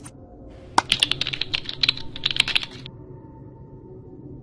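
A quick, irregular run of sharp clicks, about eight a second, lasting a little over two seconds, over faint background music.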